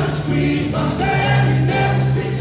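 Live acoustic rock band playing: a male lead vocal sung over strummed acoustic guitars and steady low notes, with a light percussive hit about once a second.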